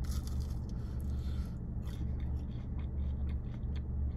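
A person biting into a fried mac and cheese bite, then chewing with small mouth clicks, over a steady low hum.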